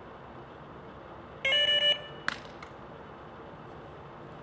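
Electronic carp bite alarm sounding a brief run of rapid beeps for about half a second, followed by a single sharp click.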